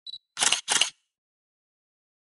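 Camera sound effect: a short high beep, then a two-part shutter click, all within the first second.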